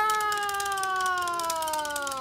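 A man's voice holding one long, drawn-out syllable at the end of a called-out Japanese 'congratulations' (おめでとうございます), its pitch sliding slowly downward.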